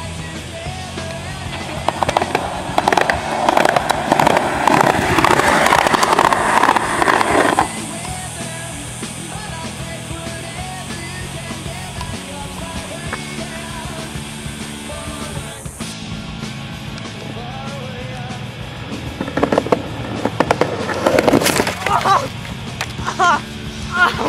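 Skateboard wheels rolling fast down a concrete sidewalk, a loud rough rolling with quick clicks over the joints that stops abruptly; a shorter, rougher stretch of rolling comes near the end. Background music plays throughout.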